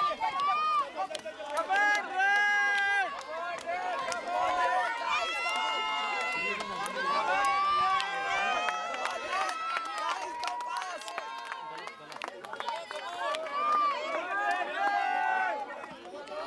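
A group of young people talking and calling out over one another, many voices overlapping without a break.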